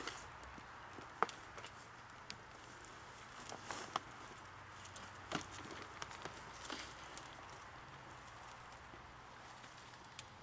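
Quiet rustling with scattered sharp clicks as gloved hands sift loose soil in a plastic tub, over a faint low hum.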